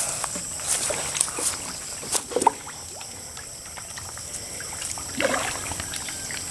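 Tilapia splashing at the pond surface as they take feed, a few short splashes in the first two and a half seconds, over a steady high-pitched whine.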